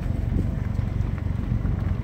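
Vehicle engine running and tyres rolling at low speed, heard from inside the cab: a steady low rumble.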